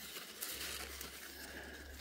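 Quiet outdoor background: a faint hiss with a low steady rumble and no distinct event.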